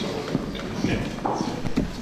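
Footsteps knocking on a hard floor as a person walks up to a floor microphone, with faint voices murmuring in the hall.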